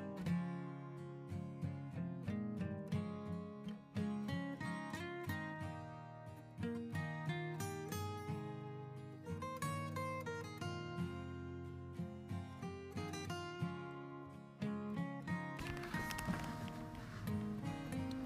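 Background music: acoustic guitar playing a melody of plucked notes.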